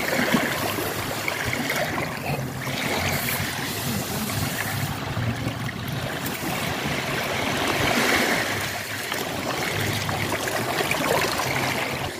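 Steady rushing, trickling water noise of small waves washing on a sandy shore.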